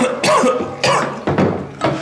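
A man coughing repeatedly after choking on something he swallowed, with about four or five coughs roughly half a second apart.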